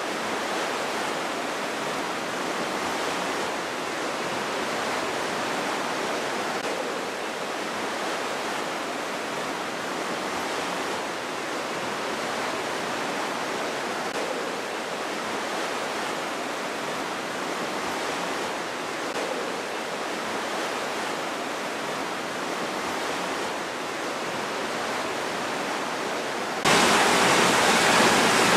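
The Aare river rushing through the gorge below, a steady, even rush of water. Near the end the noise turns abruptly louder and brighter.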